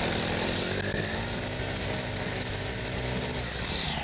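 Propane-powered four-stroke Lehr string trimmer running, its line cutting grass with a steady high hiss over the engine hum; the hiss fades out near the end as the head lifts clear of the grass.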